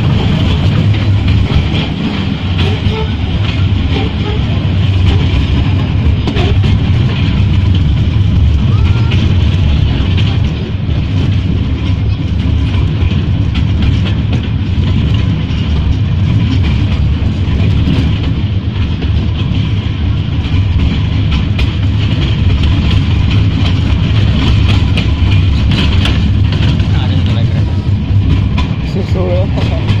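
Small open-carriage tourist train running along its track, heard from on board: a steady low rumble with constant light rattling of the cars.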